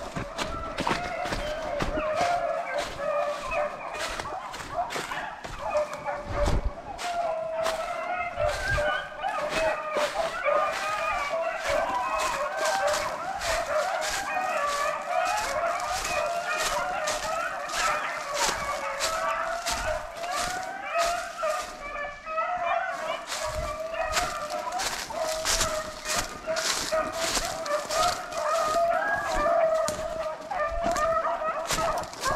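A pack of beagles baying continuously in full cry, several voices overlapping and wavering in pitch: the sound of hounds running a rabbit. Dry leaves crunch underfoot throughout.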